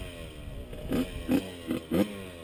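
Dirt bike engine running, its pitch sliding down, with four short thumps in the second half of the clip.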